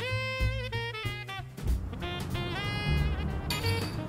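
Background music: an upbeat instrumental with a lead melody of held notes that bend in pitch over a steady bass line.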